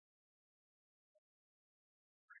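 Near silence, broken only by one very faint short click about a second in.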